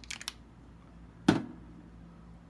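Glass fragrance bottles handled on a tabletop: a quick run of light clicks, then a single sharp knock about a second in.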